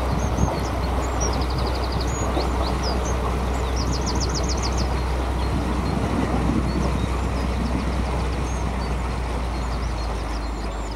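A steady low hum under a rushing, wind-like noise. Small birds sing over it, with short calls and two rapid trills of about eight notes, one about a second in and one about four seconds in.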